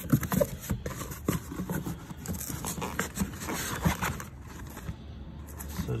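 Hands rummaging in a cardboard box and a zippered fabric bag of small plastic items: irregular rustling with light clicks and scrapes.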